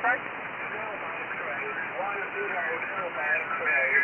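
Single-sideband shortwave receiver audio on the 15-metre amateur band: steady static hiss with a faint voice coming through the noise about two seconds in and again near the end. The voice is a weak station answering the DX operator's call-sign query.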